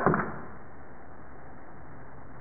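Steady, even background hiss with no distinct sound events, after the last of a spoken word fades in the first moment.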